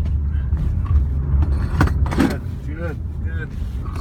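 Steady low rumble of an Acura's engine and tyres, heard from inside the cabin while it is driven at low speed, with short bits of voice over it.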